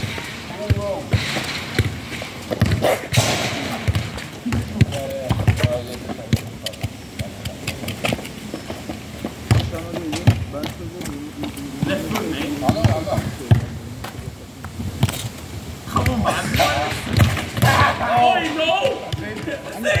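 A football thudding on a hard tarmac court, bounced and kicked again and again, with voices calling out over it, most of all near the end.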